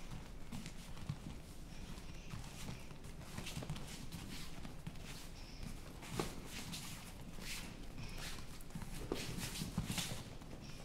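Bare feet stepping and shuffling on foam training mats, with irregular thuds of boxing gloves landing on bodies during sparring drills; the sharpest thuds come about six seconds in and near the end.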